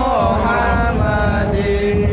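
Chanted vocal music: a voice holding long notes that waver and glide, over a steady low drone.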